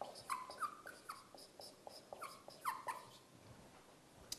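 Dry-erase marker squeaking on a whiteboard as words are written: a string of short squeaks, each falling in pitch, with light taps of the tip between strokes.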